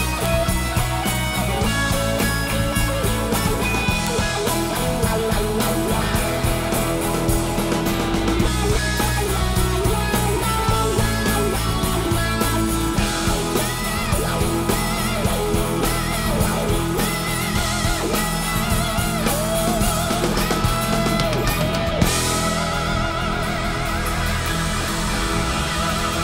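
Live rock band playing an instrumental passage: a Telecaster-style electric guitar plays a lead line with wavering, bent notes over bass guitar and a drum kit.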